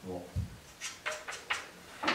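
A soft low thump, then four short, sharp clicks spaced about a quarter of a second apart: small knocks from handling balls and cue at a pool table.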